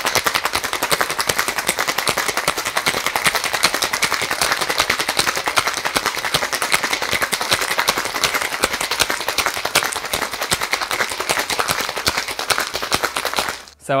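Ice cubes rattling hard inside a metal cocktail shaker, shaken fast and evenly to chill the drink, stopping suddenly just before the end.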